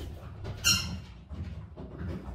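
A single short, high-pitched squeak about two-thirds of a second in, over low bumps and rustling of movement on the floor.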